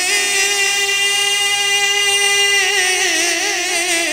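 A man singing a naat, unaccompanied, holding one long note steady for about two and a half seconds. The note then wavers in an ornamented turn and slides down in pitch near the end.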